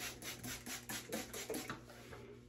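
Plastic trigger spray bottle misting water onto a synthetic wig in quick, repeated squirts, about four or five a second.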